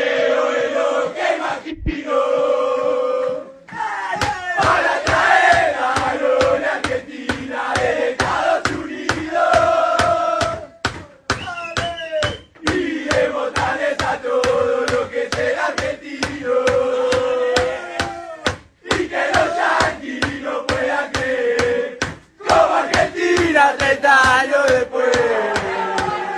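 A group of men chanting a football song in unison in a victory celebration, loud and unpolished. From about four seconds in, a steady thumping beat about twice a second keeps time under the singing.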